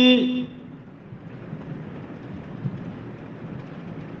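A man's chanted, held note ends about half a second in, followed by a steady hiss of background noise with no voice.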